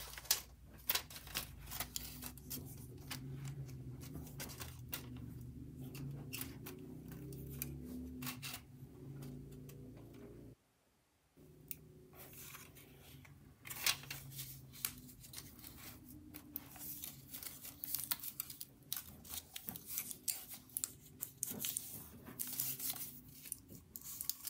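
A 2.5-inch hard drive being handled and fitted into a black drive bracket: scattered small clicks, taps and scraping of the bracket against the drive, over a low steady hum. The sound cuts out briefly a little before halfway.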